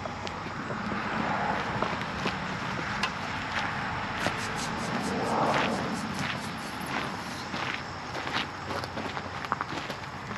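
Footsteps on a gravel driveway at a steady walking pace, about one and a half steps a second.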